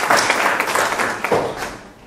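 Audience applause: many people clapping, dying away near the end.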